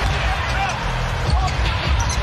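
A basketball dribbled repeatedly on a hardwood court, thumping again and again over the steady noise of an arena crowd.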